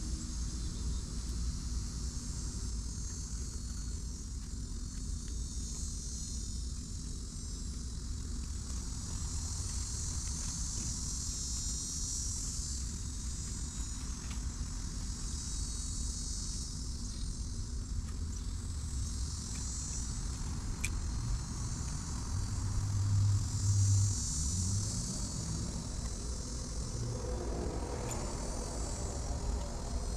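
Insects calling steadily in a high band, swelling and fading in waves every few seconds, over a constant low rumble. A deeper hum swells for a few seconds about three quarters of the way through.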